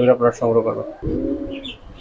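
A domestic pigeon cooing: one drawn-out coo about a second in, rising slightly and then falling away.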